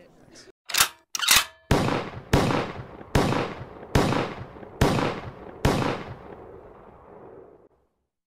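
Logo-sting sound effects: two quick sharp bursts, then six heavy impact hits about three-quarters of a second apart, each ringing out, the last fading away.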